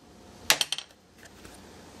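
A sharp metal clink about half a second in, with a few lighter clinks right after, as steel valve-train parts are worked off a diesel cylinder head during valve spring removal.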